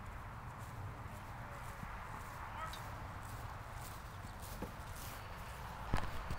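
Steady outdoor background noise with faint distant voices and a few light clicks, ending in a sharp knock.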